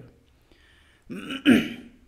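A man clears his throat with one short cough, about a second in.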